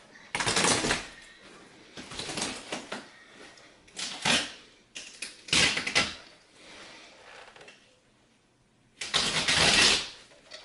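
A large piece of carpet being pulled and dragged by hand, its backing scraping and rustling against the carpet underneath in about five separate noisy bursts, the last one about a second long near the end.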